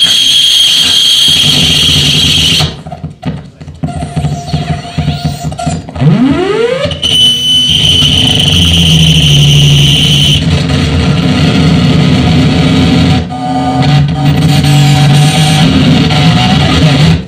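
Loud experimental noise music played live on a table of effects pedals and a mixer: a dense, distorted wall of sound with a piercing high tone. It thins out about three seconds in, then a tone sweeps sharply upward around six seconds in and the noise comes back full, with a low drone underneath.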